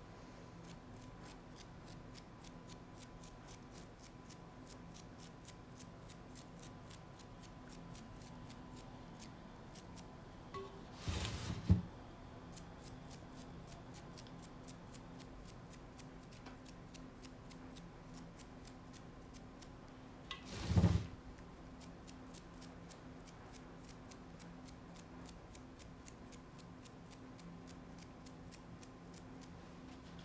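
A stiff, wet toothbrush having its bristles flicked by a finger again and again, a few quick flicks a second, to spatter fine dots of mineral paint. Two louder knocks fall about a third and two-thirds of the way through.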